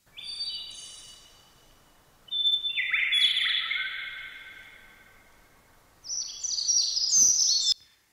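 Recorded birdsong played back: clusters of short, high chirping notes, one group about a second in, a fuller burst from about two to four seconds, and a higher, busier flurry near the end.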